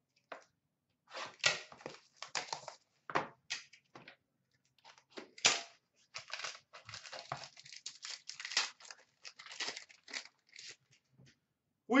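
Hockey card packs and their packaging being torn open and handled: irregular tearing and crinkling of wrappers in scattered bursts.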